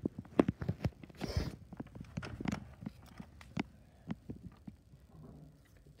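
Irregular soft thumps and clicks, as of footsteps on carpet and handling of a handheld camera while walking.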